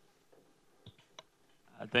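Quiet room tone with two short clicks about a second in, a few tenths of a second apart, then a man's voice starting near the end.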